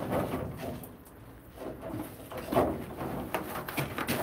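Scraping and rustling of a person crawling through a cramped gap under a collapsed roof, in several short uneven bursts.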